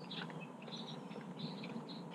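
Birds chirping, short high calls scattered through a faint steady outdoor background.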